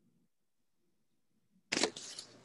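Near silence on a remote-meeting audio line, then near the end a sudden click followed by a rush of hiss as sound comes back on the line.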